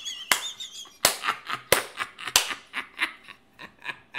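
Four loud, sharp hand claps about two-thirds of a second apart, from a man laughing hard, followed by quicker, softer pulses of breathy laughter.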